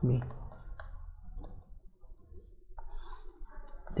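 Faint, irregular light clicks and taps of a stylus writing on a pen tablet.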